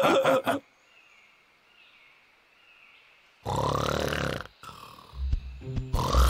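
A short burst of cartoon laughter, almost three seconds of near silence, then a cartoon character snoring loudly for about a second, with a lower rumbling snore after it.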